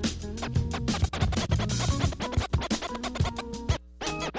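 Music with DJ turntable scratching, full of quick sharp strokes, dropping out briefly just before the end.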